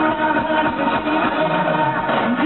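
Live band music over a stage PA: electric guitar and drums with a sung vocal line, heard from the crowd.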